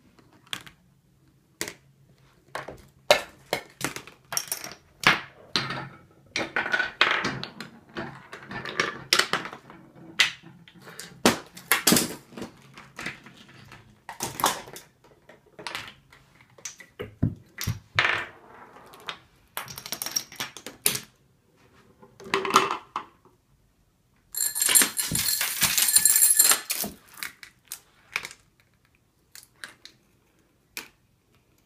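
A homemade chain-reaction machine running: plastic balls rolling along orange plastic toy track and small parts knocking into one another, giving a long irregular series of clicks and knocks. Toward the end comes a dense clatter lasting about two seconds.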